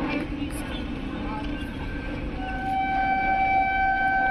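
Horn of an approaching Indian Railways express locomotive, one long steady note that comes in about halfway through and is held to the end, growing louder as the train nears.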